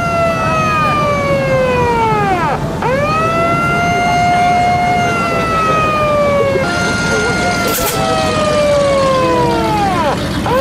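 A loud, siren-like electronic wail that slides slowly down in pitch, dips sharply and sweeps quickly back up, repeating every few seconds over a steady rumbling background. A short hiss comes near eight seconds in.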